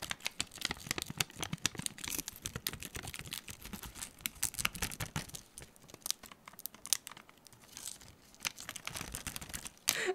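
A thin peeled sheet of dried Holo Taco One-Coat Chrome nail polish flexed and crumpled by hand, crinkling and crackling like aluminium foil with many small sharp clicks. The crackling thins out for a moment and picks up again near the end. The brittle, dried film is cracking as it is handled.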